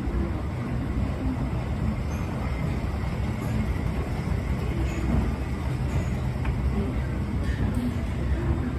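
Department-store escalator running as it carries a rider upward: a steady low rumble. Faint background voices sit behind it.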